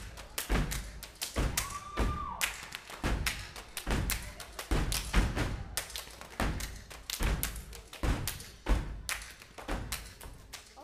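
Step team stepping: stomps on a wooden stage floor mixed with hand claps and slaps against the chest and body, in quick syncopated rhythm.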